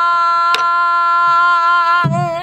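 A woman's pansori voice holding one long, steady sung note, with a single sharp stick stroke on a buk barrel drum about half a second in.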